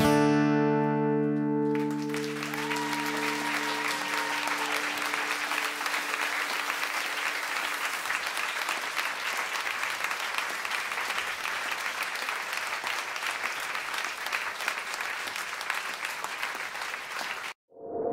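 The band's final chord on acoustic guitars and bass guitar struck and left ringing, fading over the first few seconds. Audience applause takes over about two seconds in and runs on steadily until it cuts off suddenly near the end.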